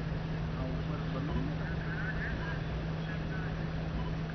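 Steady background noise: a constant low hum with rumble beneath it, and faint voices in the distance.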